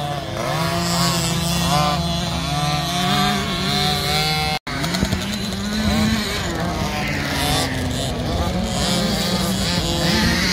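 Several 50cc two-stroke KTM 50 SX motocross bikes running and revving up and down, their high-pitched engine notes rising and falling as they go round the track. The sound cuts out for an instant about halfway through.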